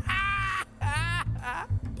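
A high-pitched, exaggerated cartoon voice laughing in a few loud, drawn-out bursts over background music.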